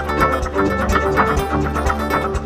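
Live contra dance band music, a dance tune with a steady beat.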